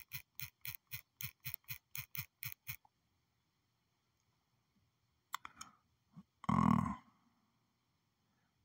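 Rapid, evenly spaced key taps on a phone's touchscreen keyboard, about four a second, as a search is typed out. They stop about three seconds in. After a pause come a few faint clicks, then a brief louder low sound near the end.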